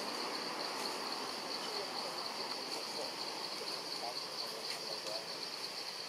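Insects droning in the forest: a steady, high-pitched buzz that pulses slightly, over an even background hiss.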